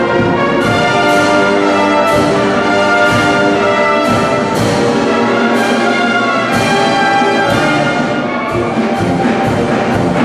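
Brass band of tubas, euphonium, French horn, trombones and trumpets playing sustained chords together, with a regular accent on each beat under a second apart.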